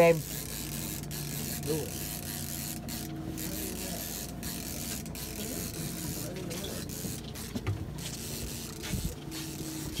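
Fishing charter boat's engine running steadily, a low even hum over a light rush of wind and water, with faint voices now and then.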